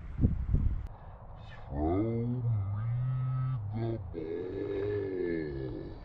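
A man's voice calling "Throw me the ball" with each word stretched into a long, wailing drawn-out note, in two long stretches with a short one between. A few low thumps come just before it, in the first second.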